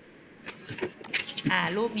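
A brief clatter of small clicks and rattles lasting about a second, then a woman starts speaking.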